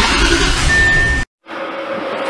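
A loud, noisy burst with a deep low end that cuts off abruptly just over a second in. After a moment of silence comes the quiet, steady hum of a Railjet locomotive cab.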